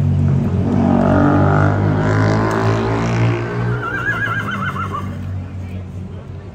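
A horse whinnies once about four seconds in, a wavering call that falls slightly in pitch. It sounds over the steady low running of a vehicle engine, which fades out around the same time.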